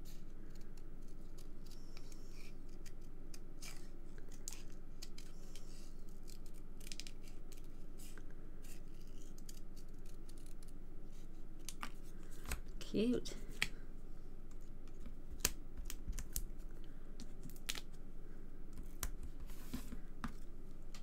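Scissors cutting out a stamped paper image: irregular short snips through the paper, one after another, with small paper rustles.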